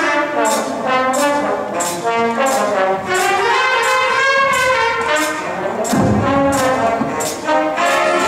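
School jazz big band playing, with trumpets and trombones leading over saxophones and upright bass, kept to a steady cymbal beat; a low accent hits about six seconds in.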